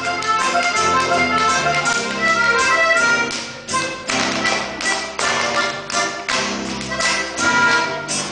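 Live Tyrolean folk dance music from a band, with the sharp slaps and stomps of Schuhplattler dancers striking their thighs, shoes and the stage floor throughout.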